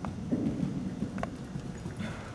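A horse's hooves cantering on soft arena footing: dull, irregular thuds, with two brief sharp clicks.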